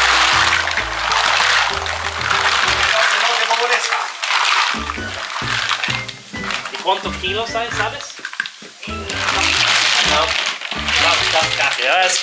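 Shellfish tipped out of crates onto red-hot curanto stones, the shells clattering down and a loud hiss rising as the water from the mussels and clams hits the stones. The hissing comes in two spells, at the start and again near the end, with background music and voices between them.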